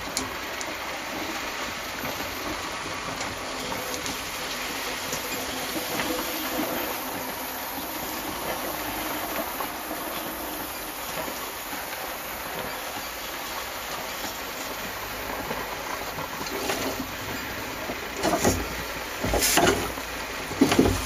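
Small steam engine running, with a steady hiss of steam. A few louder knocks come near the end.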